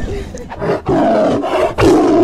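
A loud roar, like a big cat's, coming in three surges. Each surge is longer and louder than the one before, with the last starting near the end.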